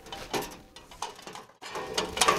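A few faint knocks and rattles as a TechStop limiter bar is slid down into the slots of a charging tower's shelves.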